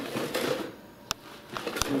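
Things being handled and moved about: a rustle, then a few sharp clicks and knocks.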